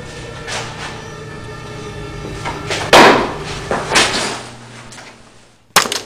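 Heavy thuds and knocks of a staged scuffle: one very loud thud about three seconds in, a couple of lesser knocks a second later, and a sharp click just before the end.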